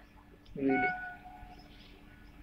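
Train horn sounding one steady note for about a second, starting about half a second in, over a steady low hum.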